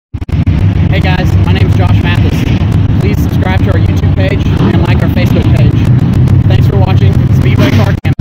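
A man talking close to the microphone over loud, steady engine noise from dirt-track race cars running on the track.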